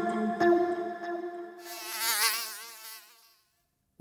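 Short music sting fading out, followed about one and a half seconds in by a buzzing fly sound effect that wavers in pitch and fades away.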